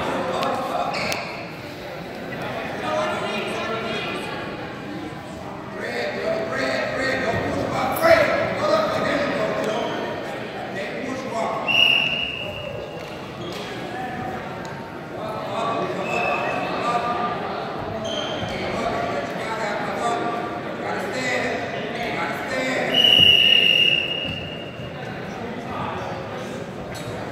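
Echoing chatter of many voices in a large gymnasium, with an occasional thud and three high steady whistle blasts from a referee's whistle: a short one about twelve seconds in, a faint one a few seconds later, and a longer, louder one near the end.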